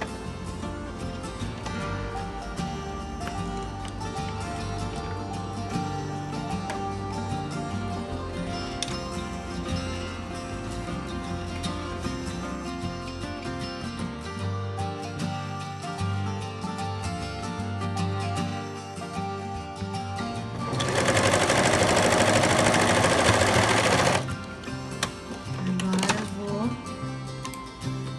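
Domestic sewing machine zigzag-stitching the raw cut edge of denim, under background music. The machine is heard loudest in a fast run of about three seconds near the end.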